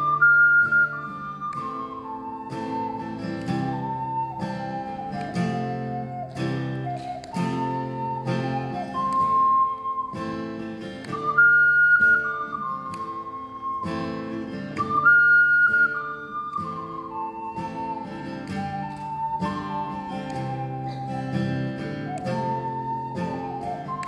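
Ocarina playing a slow, legato melody over steady acoustic guitar strumming. The melody's highest held notes are the loudest moments.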